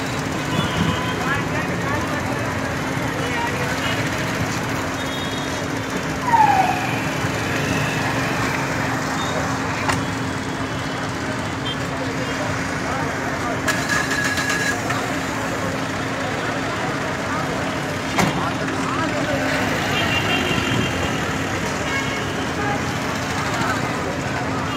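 Street noise: voices of a crowd talking over road traffic, with a steady low hum and a short vehicle horn a little past halfway.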